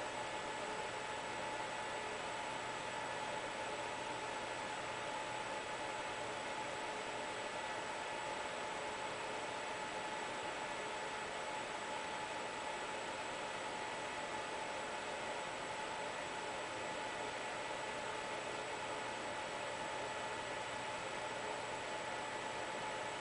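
Steady hiss with a few faint constant tones and no distinct events: recording noise and room tone.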